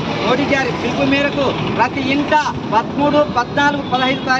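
People's voices speaking over the steady noise of street traffic.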